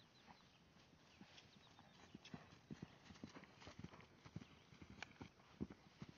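Faint hoofbeats of a Fjord horse cantering on grass, an uneven run of dull strikes that thickens from about two seconds in.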